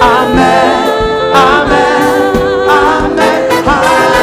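Gospel choir singing, several voices holding wavering notes over instrumental accompaniment with a steady low beat.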